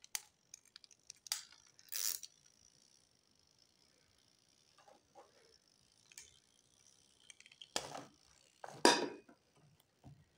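Hands handling a small plastic rotary timer and its wires: scattered clicks and rustles, the two loudest near the end, over a faint steady high tone.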